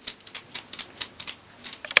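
Stiff paintbrush dry-brushing paint onto a moulded polyester frame: a quick run of short, scratchy bristle strokes against the hard surface.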